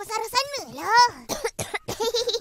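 A young cartoon boy's voice coughing and spluttering, choked by smoke from a charcoal grill, with short pitched vocal sounds between the coughs.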